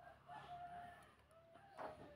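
Faint, drawn-out animal call held on one pitch, with a shorter second call after it, in near silence. A soft knock comes near the end.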